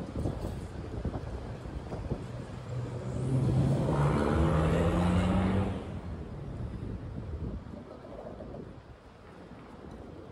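Street traffic noise, with a motor vehicle passing close by in the middle: its engine note rises as it accelerates, is loudest for about two seconds, then drops away.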